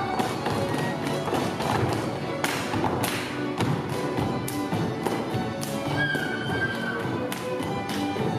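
Slovak folk string band with fiddles and double bass playing a lively dance tune, with dancers' boots stamping and heels striking the wooden stage in many sharp taps.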